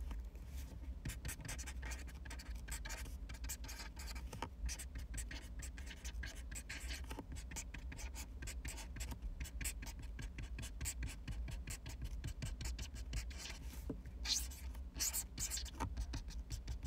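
Pen writing on paper: a continuous run of quick, scratchy strokes and taps, over a low steady hum.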